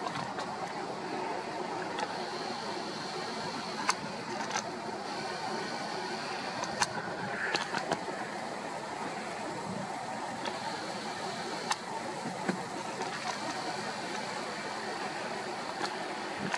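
Steady outdoor background noise, with a few short sharp clicks scattered through it.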